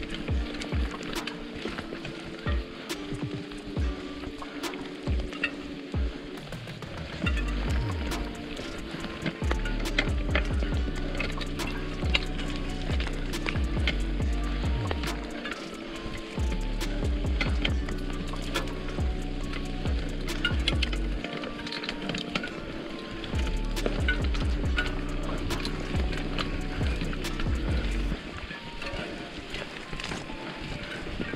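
Background music with a steady beat and held notes. A deep bass line comes in about seven seconds in and drops out briefly a couple of times.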